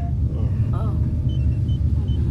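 A deep rumbling drone used as a radio drama sound effect, swelling a little, with a few faint high electronic bleeps over it; in the drama it signals that the supercomputer AM is about to speak. Brief gasping voice sounds come over it.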